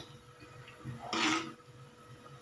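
A ladle scraping once against the side of a clay pot while stirring a thick curry, a short scrape about a second in.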